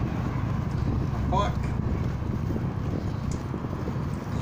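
Steady low rumble of road traffic and wind noise on the microphone of a moving e-bike, with a brief voice-like sound about a second and a half in.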